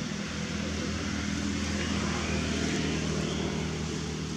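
A motor running with a steady low hum, with faint high squeaks about two seconds in.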